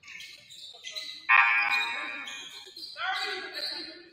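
Voices calling out in a gymnasium, echoing. One loud, long held call comes about a second in and fades, and a shorter call follows near the end.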